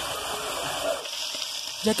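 Thin pork steaks frying in hot oil in a pan: a steady sizzling hiss. A woman's voice begins near the end.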